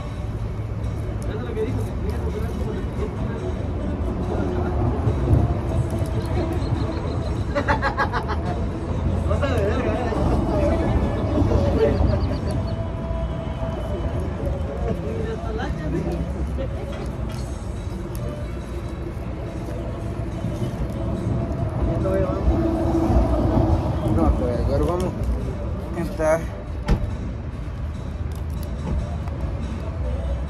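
Roadside ambience: a steady low traffic rumble, with background voices and music over it.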